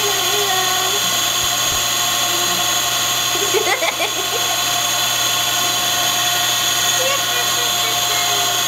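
A steady mechanical whirring hum with many fixed tones runs under everything. Over it a woman's voice coos softly near the start and gives a short laugh about four seconds in.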